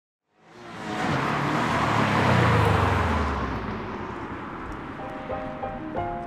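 A car engine swelling up loudly and dying away, then piano music begins near the end.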